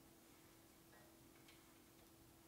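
Near silence: room tone with a faint steady hum and a couple of faint small clicks about a second and a second and a half in.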